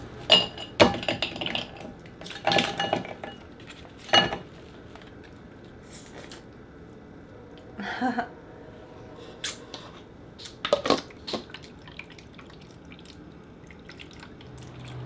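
Frozen birch-water ice cubes knocked out of an ice cube tray and clattering into a glass bowl: a quick run of sharp clinks and knocks in the first few seconds, then a few scattered clinks of ice and glass later on.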